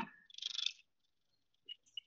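A short, soft puff of breath from a person, with a light flutter, followed by near silence with two faint ticks near the end.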